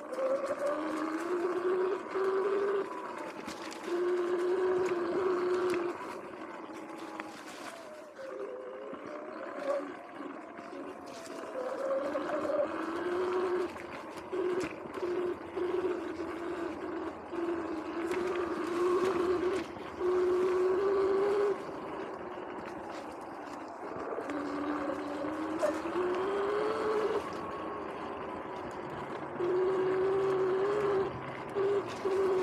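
Sur-Ron X electric dirt bike motor whining as it is ridden over rough dirt singletrack. The whine swells and falls in steps as the throttle is opened and closed, and rises steadily in pitch near the end as the bike accelerates. Tyre noise and knocks from the trail run underneath.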